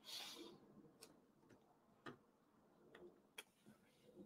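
Near silence, broken by about five faint, irregular clicks from handling a computer.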